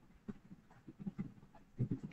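Faint breathing: a few soft, short puffs, a little stronger near the end.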